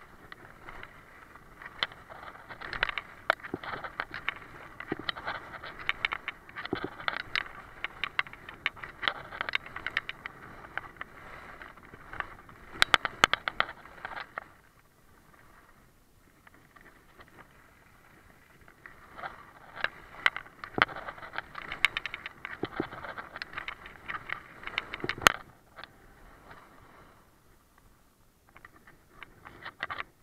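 Skis scraping and chattering across a hard, icy piste, with many sharp clicks from the edges: blunt skis skidding on ice. The scraping comes in two long stretches with a quieter glide in between.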